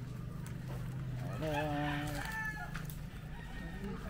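A rooster crowing once, a single call about a second and a half in that lasts about a second.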